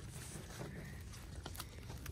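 Faint close handling sounds in dry leaf litter while a morel mushroom is cut at its stem: light rustling with a couple of small clicks about one and a half seconds in.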